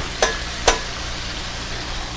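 Food sizzling in a hot pan on a gas burner, a steady hiss, with two sharp clicks in the first second.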